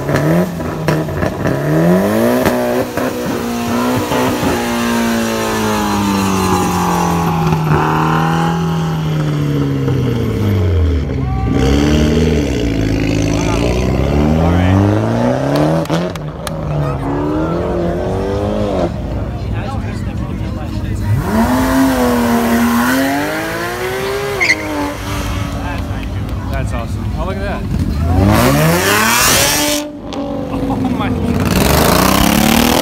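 Several cars accelerating away one after another, the first a Mitsubishi Lancer Evolution X. Each engine revs up and falls away in pitch through the gears, in repeated rising and falling sweeps.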